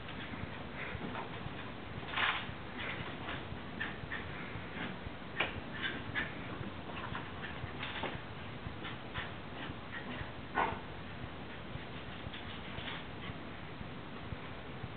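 Wire fox terriers making scattered short, excited yips and whimpers as they race around after a bath; the loudest come about two, five and a half, eight and ten and a half seconds in.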